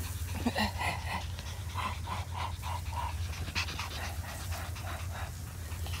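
Yorkshire terrier panting rapidly with its tongue out, about four breaths a second, tired after a walk. The panting fades about halfway through, over a steady low hum.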